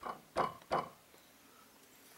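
Hammer tapping a carriage bolt through a drilled hole in a wooden trailer side board: three light taps about a third of a second apart, then stopping.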